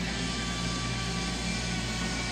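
Steady background noise: a constant low hum under a hiss, with no distinct events.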